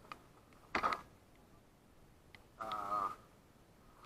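Gear being handled: a short clatter just under a second in, then a brief pitched sound about half a second long that falls slightly in pitch.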